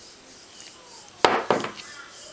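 Two sharp clacks about a quarter second apart, a little past halfway. They come from a modular-plug crimping tool opening and letting go of a freshly crimped RJ12 telephone-style plug.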